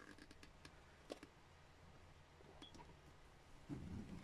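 Near silence with a few faint, sharp clicks from hands handling a small tool and wiring at the seat, and a soft bump near the end.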